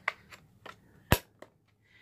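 Plastic battery cover being pressed onto the back of a drone's radio transmitter: a few light clicks, then one sharp snap a little over a second in as it latches.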